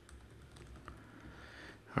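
Faint typing on a computer keyboard: a scattered run of soft key taps.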